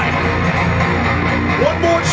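Electric guitar from a live metal band playing loud through an arena PA, with a few notes bent up in pitch near the end. It is heard from the crowd.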